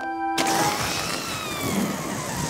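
Cartoon sound effect of a loud rush of hissing air that starts suddenly about half a second in, with a faint whistle slowly falling in pitch: balloons bursting out of a small box and inflating. A short held musical note ends just before it.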